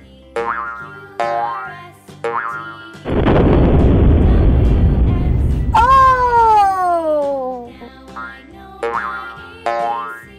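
Cartoon music and sound effects: short plucked-sounding notes, then a loud burst of noise from about three seconds in lasting nearly three seconds, followed by a long tone sliding downward in pitch, and a few more short notes near the end.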